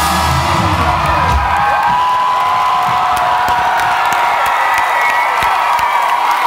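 Live band music with a cheering crowd: the bass and drums stop about a second and a half in, leaving a single held note ringing over the audience's cheers and whoops.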